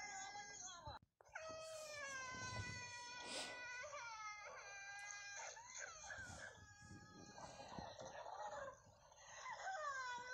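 A high-pitched, baby-like crying wail: long drawn-out cries with a wavering pitch, broken by a brief dropout about a second in.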